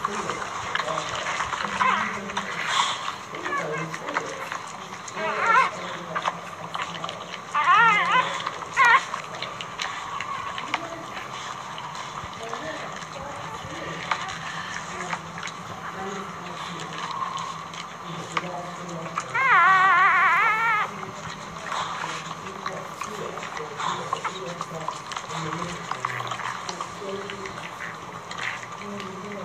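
Newborn puppies crying in thin, high, wavering squeals: a few short cries in the first ten seconds and one longer warbling cry about twenty seconds in.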